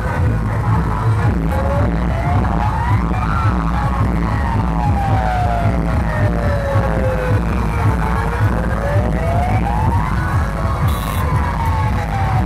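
Loud music with heavy bass beats, and over it a siren wailing slowly up and down, rising to its peak twice.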